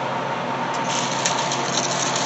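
Dried mint and lemon balm bundles rustling and crackling as they are handled, the crisp rustle starting about a second in, over a steady background hum.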